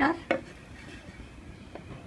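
A single sharp clack of a ceramic plate against a hard plastic tray, then a faint tick near the end.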